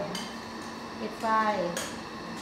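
Two sharp clicks from hands working a light microscope, one just after the start and one near the end, with a short spoken phrase between them.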